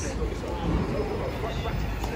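Busy city street: steady traffic noise from passing cars and taxis, with faint voices of people nearby.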